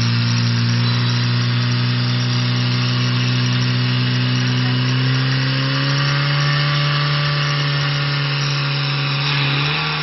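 Portable fire pump's engine running steadily at speed while pumping water through the hose lines to the nozzles. Its pitch rises slightly about five seconds in.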